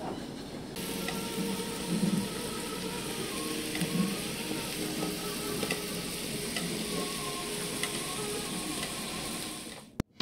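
Thinly sliced meat sizzling on a tabletop barbecue grill pan, a steady hiss that grows louder about a second in.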